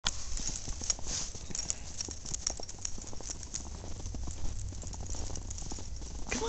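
Footsteps crunching in snow: a continuous run of short, irregular crunches, with a low rumble underneath.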